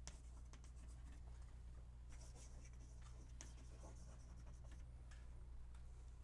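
Chalk writing on a blackboard: faint, irregular scratches and taps of the chalk strokes.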